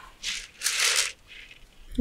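A person's breathy exhale like a sigh, in two puffs of air. The second puff, about half a second in, is longer and louder.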